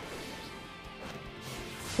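Anime episode soundtrack playing at low volume: background music mixed with crashing destruction sound effects.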